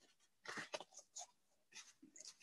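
Greeting cards and cardstock being handled: several short, scratchy paper rustles.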